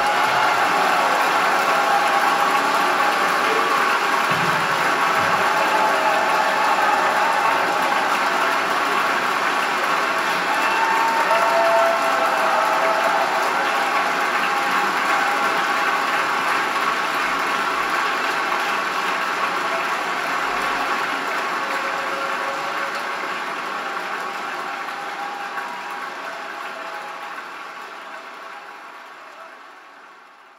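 Audience applause at the end of a live jazz recording, played back over a hi-fi loudspeaker system; it is a dense, even clatter of clapping that fades out over the last several seconds.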